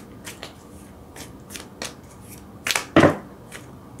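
A deck of tarot cards being shuffled by hand: a run of separate card snaps and slides, loudest in a cluster about three seconds in.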